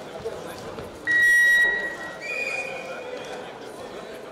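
A loud, steady high-pitched signal tone about a second in, held for about half a second and ringing on in the hall. A fainter, slightly higher tone follows about a second later, over crowd chatter.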